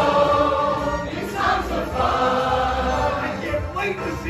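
A group of voices singing together in chorus, with musical accompaniment.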